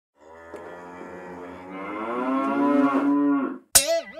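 A cow's single long moo that grows louder over about three seconds and then stops abruptly. A short, sharp sound with a bending pitch begins just before the end.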